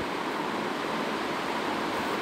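Steady, even hiss of room background noise with nothing else in it.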